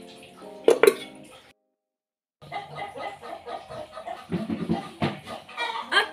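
A metal spoon clinks against dishes in the first second and a half; after a second of silence, domestic chickens cluck in the background.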